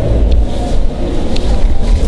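Low rumble of handling noise on a handheld camera's microphone while climbing into a car's driver's seat, with a few faint clicks over the background hubbub of a busy exhibition hall.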